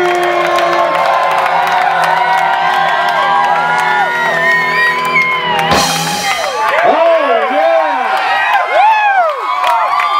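Live rock band with electric guitar holding a long chord that ends on one loud final hit about six seconds in, closing the song; the crowd then cheers and whoops.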